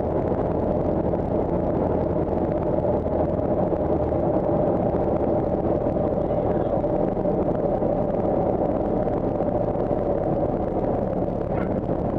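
Cessna 172's piston engine and propeller running steadily at low power, heard inside the cabin as the plane rolls on the ground, with no change in pitch or loudness.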